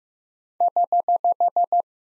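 Morse code sidetone, a single steady beep near 700 Hz, keyed as eight quick, equal dits starting about half a second in: the error or correction prosign (HH), sent at 15 words per minute.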